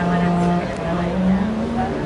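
Voices talking indistinctly, not close to the microphone, over steady outdoor background noise.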